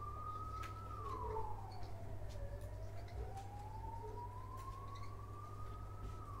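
A distant siren wailing: a single tone that falls quickly, climbs slowly for about three and a half seconds, then falls again near the end.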